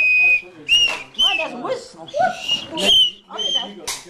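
A small toy whistle blown in short, high toots, about half a dozen, among voices and laughter at the table.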